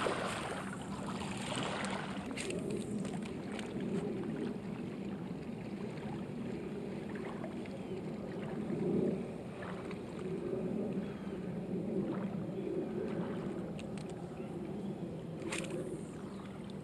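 Small waves lapping at the lake shore in a light wind, with the soft whir of a spinning reel being cranked to retrieve a lure.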